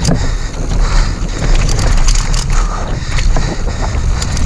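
Wind noise on an action camera's microphone and the rumble of mountain bike tyres on a dirt trail at speed, with frequent short clicks and rattles from the bike over the rough ground.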